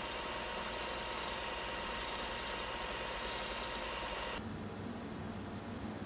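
Bench belt/disc sander grinding the cut end of a metal aircraft axle: a steady, gritty grinding with a constant whine. The grinding stops suddenly about four and a half seconds in, leaving a low hum.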